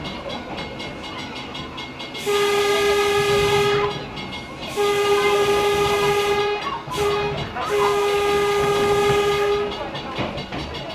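Electric interurban railcar's horn sounding the grade-crossing signal from on board: two long blasts, one short, then one long, all at one steady pitch. The car's steady rolling noise runs underneath.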